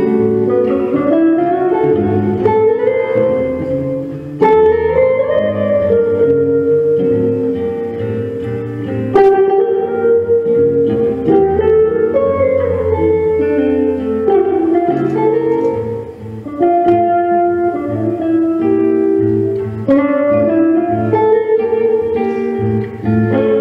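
Live jazz guitar music: guitar playing a moving melodic line with low notes underneath, with a few sharply struck notes along the way.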